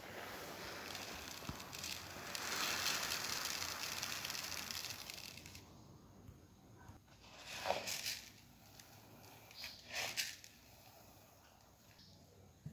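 Dry raw white rice grains rustling and sliding in a plastic basin: a steady grainy hiss over the first half, then two short rustles later on.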